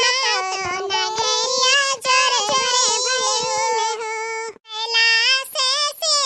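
A high-pitched cartoon-character voice singing a song, with a brief break about four and a half seconds in.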